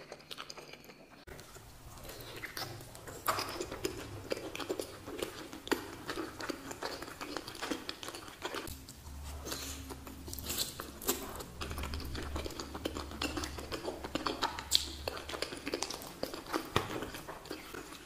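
Close-miked eating sounds of soft, saucy food: chewing, biting and lip smacking, made up of many small, irregular wet mouth clicks.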